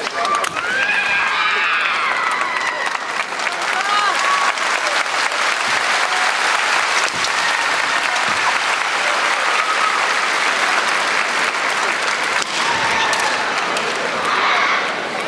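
Large audience applauding steadily, a dense patter of many hands clapping, with voices calling out from the crowd in the first few seconds.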